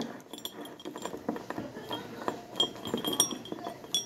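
Crayons rattling and clinking against one another and against the sides of a ceramic mug as a hand rummages through them: a run of small, irregular clicks, some with a brief high ring.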